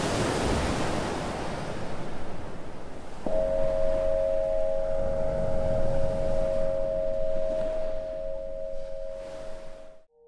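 Recorded ocean waves washing in, with a crystal singing bowl struck about three seconds in and ringing on as a steady tone of two close pitches over the surf; everything cuts off suddenly at the end.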